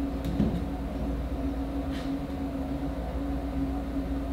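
A steady low mechanical room hum, with a few light ticks and a soft knock, the first about a quarter second in and another about two seconds in.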